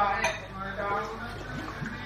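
Speech: women's voices talking in a room.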